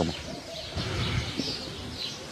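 A bird calling faintly over quiet outdoor background noise.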